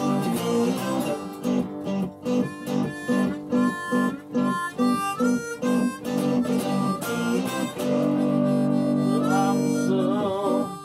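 Blues harmonica solo played over a rhythmic guitar accompaniment. Near the end the harmonica holds one long chord.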